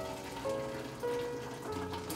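Thick blended orange puree pouring and trickling through a mesh strainer into a glass pitcher, under background music of held notes that change about every half second.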